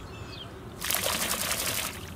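A wet dog shaking water from its coat, a rapid spray of water lasting about a second, starting just under a second in.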